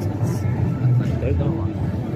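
Street ambience in a busy pedestrian square: indistinct voices of passers-by over a steady low rumble.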